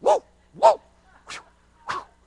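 Four short, sharp voiced exclamations, about two-thirds of a second apart, each a single clipped syllable.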